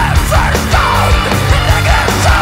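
Heavy metal/hardcore band playing: distorted electric guitars, bass and drums at full volume.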